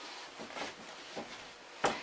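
Soft rustling of a blanket being stuffed into a pair of bike shorts by hand, with a single sharp knock near the end.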